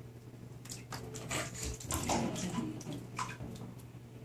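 Bathwater sloshing and splashing in a tub as small feet kick in it, a run of splashes from about half a second in until past three seconds, over a steady low hum.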